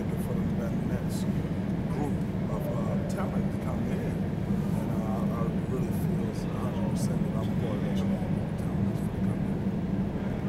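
Indistinct background voices over a steady low hum: the room noise of a large, busy hall.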